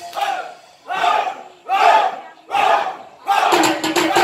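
A group of Soreng dancers shouting together: four short war cries about a second apart. Percussion-led music comes back in near the end.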